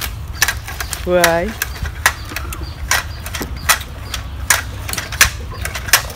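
A man's short shout of "hey!" about a second in. Sharp taps and clicks are scattered irregularly through the rest, about one or two a second, over a steady low rumble.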